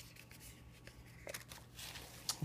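Faint rustling and light handling of a cardboard box and its shredded-paper filler as items are set down and moved, with a soft click at the start and a couple of brief rustles in the second half.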